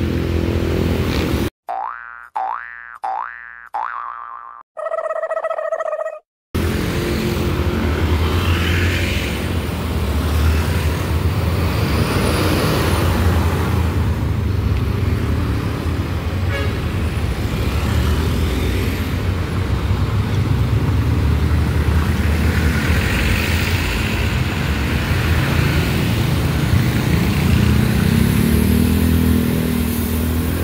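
About two seconds in, four rising cartoon 'boing' sound effects, each fading, then a short held tone, cut cleanly into the soundtrack. Otherwise steady road traffic: the running engines of buses, cars and motorcycles.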